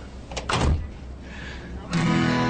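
A door being shut: a sharp latch click and then a single heavy thud about half a second in.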